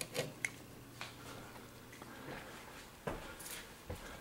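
Faint handling noises: a few soft clicks and rustles from a gloved hand working alligator-clip jumper leads off thermostat wires, with a small cluster about three seconds in, over a faint steady low hum.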